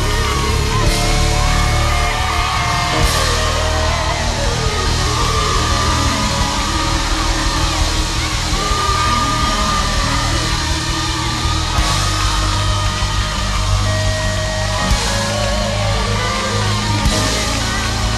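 Gospel worship music: a full band with strong, steady bass and occasional cymbal crashes under held voices.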